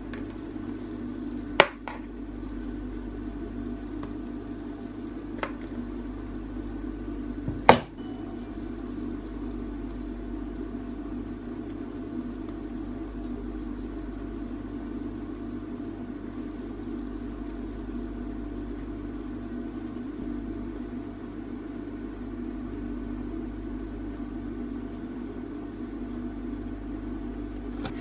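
A spatula clinking against a mixing bowl and a metal baking tin: three sharp knocks in the first eight seconds, the last the loudest, as thick mascarpone cream is scooped and spread over sponge fingers. Under them runs a steady low hum.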